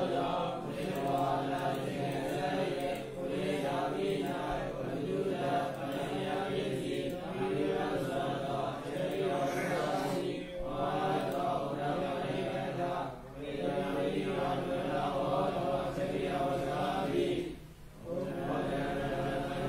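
Buddhist monastic chanting: voices reciting in a steady, sing-song cadence, with short breaks between phrases every few seconds.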